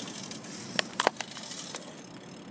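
Clear plastic clamshell berry container crackling and clicking as it is handled in the hand, a few sharp clicks with the loudest about a second in.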